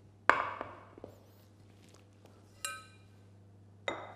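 A glass Pyrex proving dish and its baking lid, flipped upside down, set down on the worktop with one sharp knock. Near the end comes a short ringing ping, then another light knock as the dish is handled.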